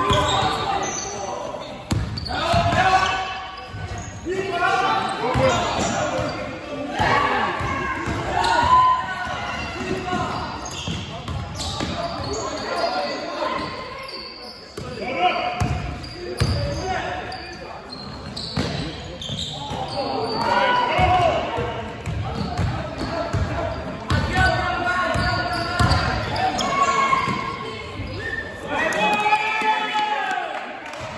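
A basketball dribbled and bouncing on a wooden sports hall floor, the thuds echoing in the large hall. Players and spectators shout indistinctly throughout.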